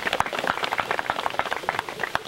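Applause from a small crowd: many hands clapping in a dense, irregular patter.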